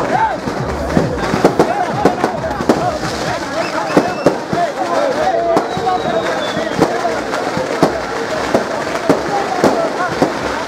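Firecrackers going off in rapid, irregular sharp bangs, several a second, over the voices of a crowd.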